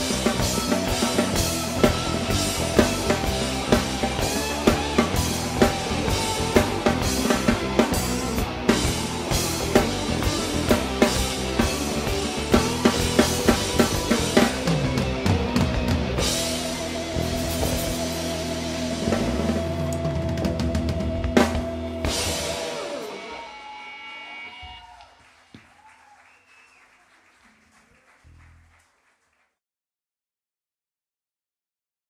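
A band playing live without singing, the drum kit prominent with rapid hits and cymbals over held bass and guitar notes. The song ends about 22 seconds in; the last chord rings out and fades away, and the recording cuts to silence near the end.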